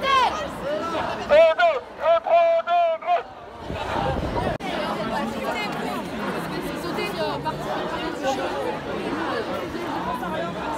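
Young protesters shouting loudly in high voices for about three seconds, then a crowd of many voices chattering together at a street protest.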